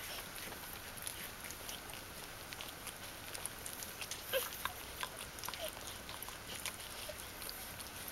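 Newborn Bichon Frisé puppies nursing on their mother: faint, brief squeaks now and then, the clearest about four seconds in, among soft clicking noises.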